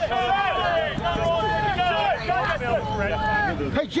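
Several men's voices shouting and calling over one another around a rugby ruck.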